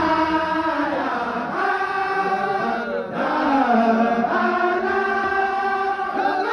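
A group of men chanting a Sufi zikr in unison: long held phrases that glide up and down in pitch, with a short breath break about three seconds in.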